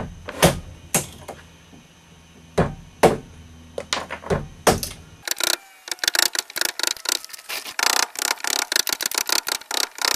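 Sharp knocks from wood-chiseling with a mallet and chisel on a cedar propeller blank, a few separate strikes at first. From about five seconds in they give way to a fast, continuous clatter of clicks and taps.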